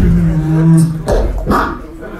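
Human beatbox: a held, buzzing low vocal hum for about a second, then two sharp percussive mouth sounds.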